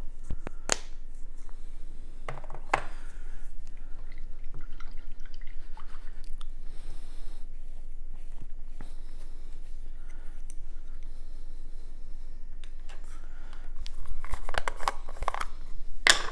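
Small clicks and rustles of hands handling a paintbrush and small painting supplies at a table, over a steady low hum, with a louder rustle near the end.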